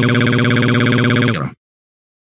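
A synthesized text-to-speech voice holding one long, flat-pitched 'Waaaaa!' wail, a steady, slightly buzzy drone. It cuts off suddenly about a second and a half in.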